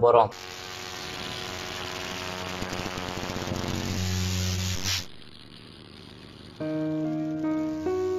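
Channel intro music: a rising, hissing swell with held tones and a low drone that builds for about five seconds and cuts off suddenly. After a short lull, held notes begin again.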